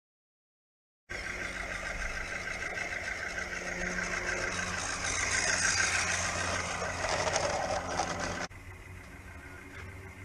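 A 16mm-scale garden-railway locomotive and wagon running close by, a steady hiss and rattle that grows louder as the train passes. It cuts off sharply about eight and a half seconds in, leaving a quieter, steadier sound.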